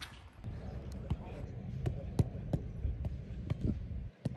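A football being struck repeatedly: sharp thuds about three times a second.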